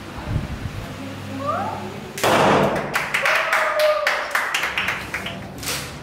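Short rising animal-like cries, then a sudden loud commotion with many sharp knocks and a drawn-out wailing tone.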